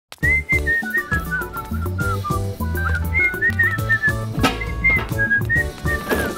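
A whistled tune of short, sliding notes over a backing track with bass, chords and percussion, starting abruptly at the top.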